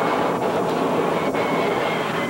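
Steady road and engine noise of a moving car, heard from inside the car.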